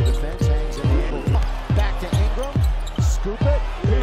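Background music with a deep bass drum that drops in pitch on each hit, beating about two to three times a second under steady pitched notes.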